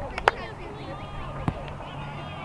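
Distant voices of players and sideline spectators at a youth soccer match, with two short knocks near the start and a sharper one about a second and a half in.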